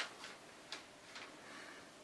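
A quiet pause with a few faint, sharp ticks, about two a second.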